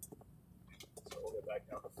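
A faint, steady engine and road drone inside the cabin of a moving Suzuki Sidekick, with soft voice sounds about a second in.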